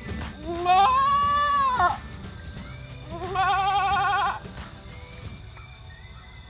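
Goat bleating twice: a long call that rises and falls in pitch, then a second, shorter one about three seconds in with a quick quaver.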